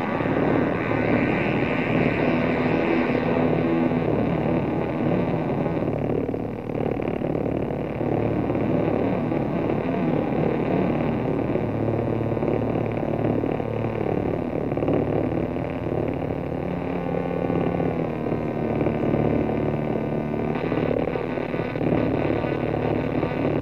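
Live electronic music: a dense, distorted drone of sustained tones with effects, its pitched layers shifting about halfway through.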